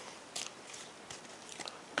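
Faint handling sounds of a foil Pokémon booster pack being picked up off a glass table: one short crinkle less than half a second in, then a few soft ticks.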